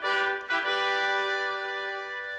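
A brass fanfare with trumpets: a short chord, then a long held chord.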